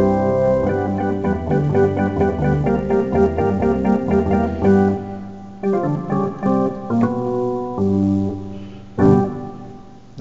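Roland D-50 synthesizer played with an organ-like sound: rhythmic chord stabs, a short break about halfway, more chords, then a final chord about nine seconds in that dies away.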